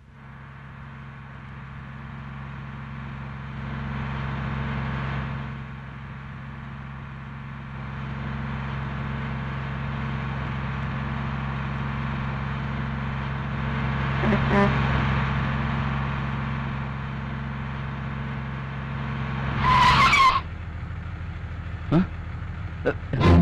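Bus engine running steadily, getting louder over the first few seconds. Near the end comes a short, loud screech.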